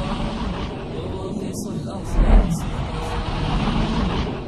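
Voices over a steady, noisy rumble, with one low, louder thud a little after two seconds in.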